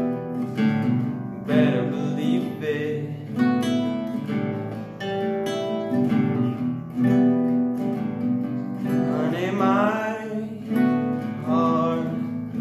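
Steel-string acoustic guitar played in chords, strummed and picked in a steady rhythm, with the chord changing every second or two.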